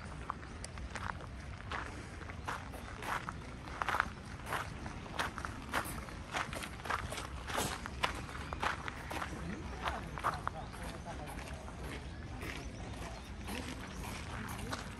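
A person's footsteps at a steady walking pace, about one and a half steps a second, growing fainter and sparser near the end.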